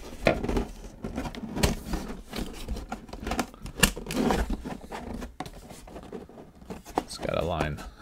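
Handling noise from fitting the panels of a pop-up docking-bay diorama together: irregular light taps, scrapes and rustles as the pieces are lined up and pressed into place, with a quiet murmured voice shortly before the end.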